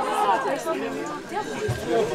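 Several people's voices talking and calling out at once, a general chatter with crowd noise behind it.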